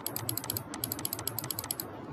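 Computer mouse scroll wheel turned quickly, a rapid run of small ratcheting clicks at about ten a second, with a brief pause a little before the middle, stopping just before the end.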